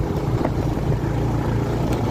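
Vehicle engine running steadily with road noise while driving along a rough dirt road.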